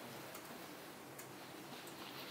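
Quiet room tone with a few faint, irregular ticks.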